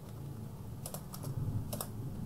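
Computer keyboard keys clicking: a few quick keystrokes in the second half, the last two close together near the end.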